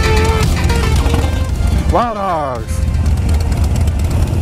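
Electronic music ending within the first second, over a low steady rumble of motorcycle engines idling; about two seconds in, a short voice call with a falling pitch.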